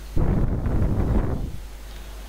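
A short rush of air noise on the microphone, lasting about a second and strongest in the low end, then fading away.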